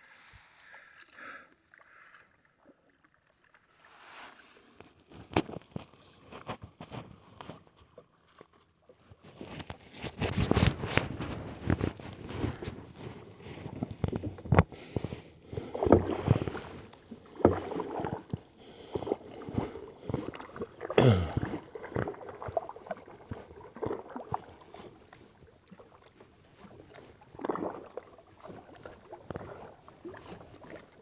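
Kayak paddling on calm water: paddle blades dipping and splashing, water sloshing and gurgling along the hull, with a few sharp knocks. Faint at first, louder from about a third of the way in, easing off near the end.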